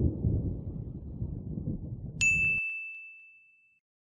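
Logo sound effect: a low rumble with dull thumps that cuts off a little after two seconds in, as a single high, bell-like ding strikes and rings away.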